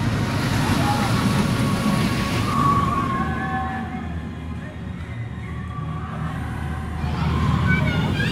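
Mack double-launch steel roller coaster train running along its track, a steady low rumble that dips in the middle and builds again near the end as a train comes closer. Voices, likely riders, sound over it.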